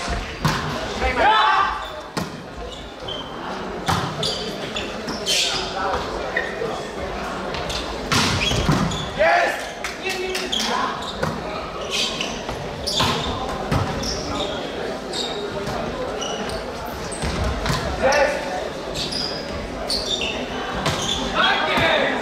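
Indoor volleyball being played: repeated sharp hits of the ball and thuds on the court, with players' voices calling out, all echoing in a large sports hall.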